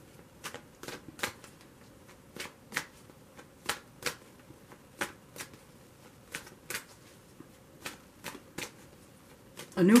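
A deck of tarot cards being shuffled by hand, the cards giving crisp ticks about two or three times a second in an uneven rhythm.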